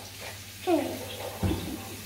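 A drink can knocking softly onto a refrigerator shelf about one and a half seconds in, after a brief child's voice.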